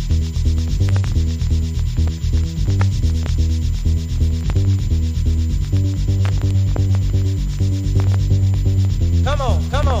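1990 UK hardcore techno track playing from vinyl: a heavy looping bass line under a fast, steady, scratchy percussion pattern, with a pitch-bending vocal sample coming in near the end.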